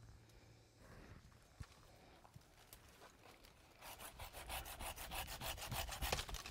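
Hand pruning saw cutting epicormic shoots off an oak trunk: quick back-and-forth strokes, about five a second, starting about four seconds in, after a few faint rustles and clicks among the branches.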